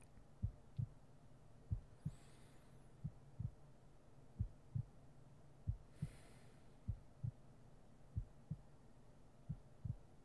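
Heartbeat sound: a slow, steady lub-dub of paired low thumps, about one beat every 1.3 seconds, over a faint low hum.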